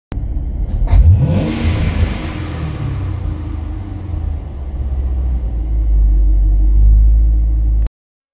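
C7 Corvette's V8 revved while parked: a quick rev about a second in, the revs falling away, then a low steady rumble that grows louder and cuts off suddenly near the end.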